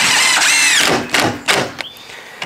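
Cordless drill-driver driving a 40 mm screw into a glued half lap joint in softwood gate timber: the motor whine rises and falls over about a second, followed by a few short clicks.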